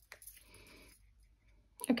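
A single light click as the acrylic stamp block and ink pad are handled, followed by a faint, brief scuff.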